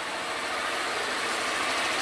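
Motorcycle engine idling steadily, an even hum with no revving.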